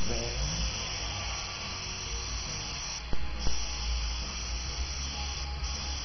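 Airbrush spraying paint onto skin with a steady hiss of air, which cuts off briefly about halfway through and again near the end, with a couple of sharp clicks around the first pause. A low hum runs underneath.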